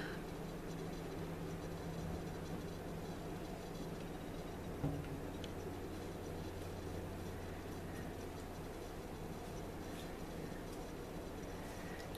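Faint soft scraping of a silicone wedge swipe tool drawn through wet acrylic paint on a canvas, over a steady low hum, with one light knock about five seconds in.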